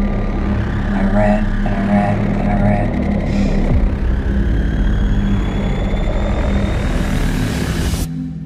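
Horror trailer score and sound design building up: a loud, dense low rumbling drone with a faint rising whine on top, breaking off abruptly at the end.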